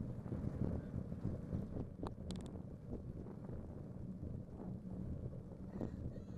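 Wind buffeting a bicycle-mounted microphone over the steady rumble of the bike rolling on pavement, with small rattles from the frame and rack and a few brief high clicks about two seconds in.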